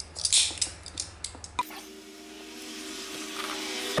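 Utility knife scoring around the plastic coating of 3/16-inch wire rope: a few short scrapes and clicks. About one and a half seconds in, these give way to a faint steady hum of several tones that slowly grows louder.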